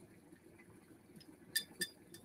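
A spoon clinking twice against the side of a mug, two light strikes close together about a second and a half in, against a quiet room.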